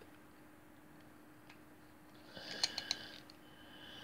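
Watercolour pencils clicking against each other as one is picked out, a quick cluster of three or four sharp clicks about two and a half seconds in, over a faint steady hum.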